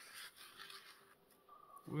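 Faint rustling and rubbing of paper and card being handled.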